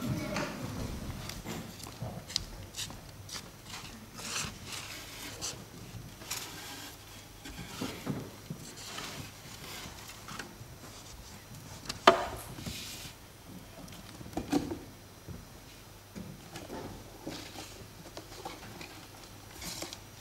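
Handling noises: scattered light knocks, rubs and clicks as a portable record player and its case are handled on a wooden table, with one sharper click about twelve seconds in.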